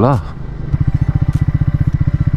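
Single-cylinder engine of a Triumph Speed 400 motorcycle running steadily at low revs with a fast, even thump, coming in about two-thirds of a second in, after a voice.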